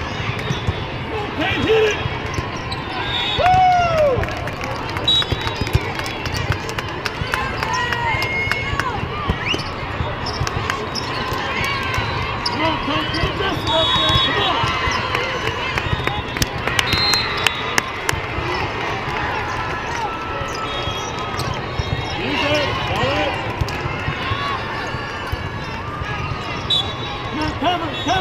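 Volleyball hall ambience: a steady hubbub of spectators' voices with volleyballs being struck and bouncing, sneakers squeaking on the court, and several short whistle blasts from the courts.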